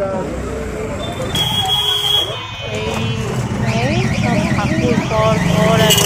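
Busy street-market bustle: people talking and passing traffic. A short, steady high beep sounds about a second and a half in, and a fast warbling electronic alarm tone comes in from about three and a half seconds in.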